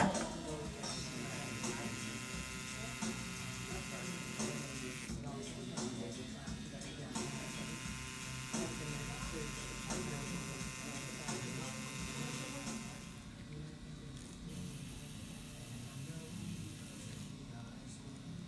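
Electric tattoo machine buzzing steadily as it inks a tattoo into skin. The buzz breaks off briefly about five and seven seconds in and dies away about thirteen seconds in, over low voices in the background.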